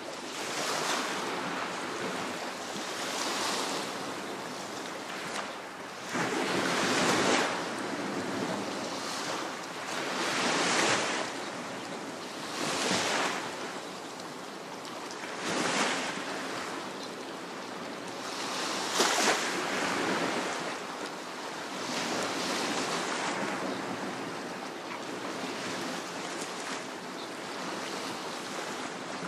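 Small sea waves breaking and washing up on a coral-reef shore, swelling and fading about every two to three seconds, with the largest surges about seven and nineteen seconds in.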